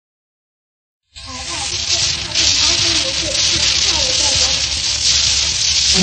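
Surface noise of an old 1934 Pathé shellac 78 rpm record: a loud, steady hiss that starts about a second in, with faint music underneath as the recording's introduction begins.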